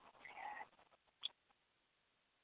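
Near silence, broken by a faint short sound about half a second in and a brief high chirp a little past halfway.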